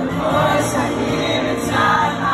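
Live band music from an arena concert with many voices singing together, heard from among the audience.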